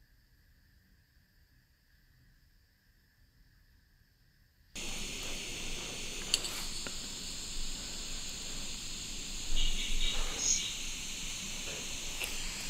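Near silence for about the first five seconds. Then a steady hiss cuts in suddenly: a handheld recorder playing back an EVP recording at high gain, with a faint click and a brief, faint sound about ten seconds in.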